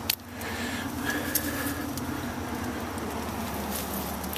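A steady low background hum with a few sharp clicks and taps.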